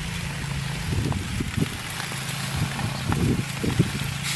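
Chicken breasts and steaks sizzling on a hot gas grill: a steady hiss over a steady low hum, with a few soft knocks about a second in and again near the end.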